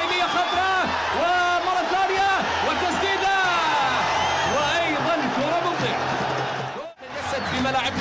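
A male TV commentator talking over a football match broadcast, with a steady low hum underneath. The sound drops out briefly about seven seconds in at an edit cut.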